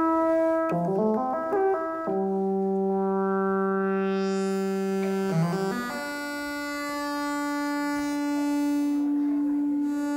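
Moog synthesizer playing held sawtooth-wave notes with a brassy tone. A quick run of stepping notes about a second in leads to a long low note, then another short run and a higher held note. The tone grows brighter partway through.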